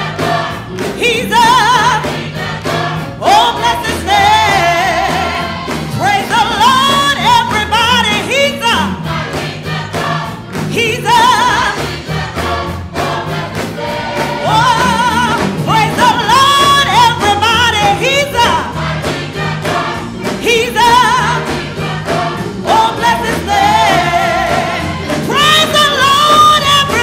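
Gospel mass choir singing with a female lead vocalist, the choir clapping along in rhythm.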